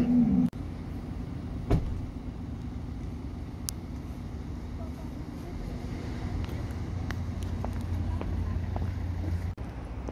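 Steady low rumble of city road traffic, with a single sharp click about two seconds in.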